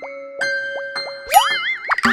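Children's music jingle of held tones with four short rising swoops, about three a second. Near the end comes a longer upward glide that wobbles up and down, like a cartoon boing effect.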